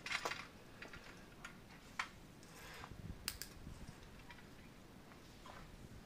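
Faint scattered clicks and light metallic rattles from a small folding metal hand cart being folded and handled, with a sharp click at the start and the loudest one about three seconds in.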